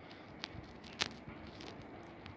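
Quiet outdoor background with a few short clicks, the loudest about a second in.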